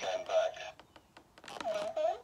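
A talking action figure's sound chip plays a clip of a man's voice from the Halloween II film (Dr. Loomis) through its small built-in speaker. There are two short spoken phrases, one at the start and one about a second and a half in. The owner suspects the batteries are going.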